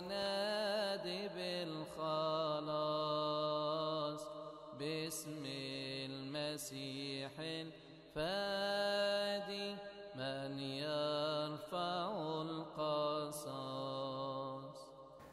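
A solo male voice chanting a slow religious melody, holding long notes with wavering ornaments, in phrases of a few seconds separated by short breaks.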